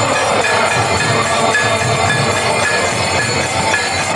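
Kirtan music: a harmonium playing a continuous drone-like chordal tone, with small hand cymbals (kartals) clinking in a steady repeating beat over a dense, loud mix.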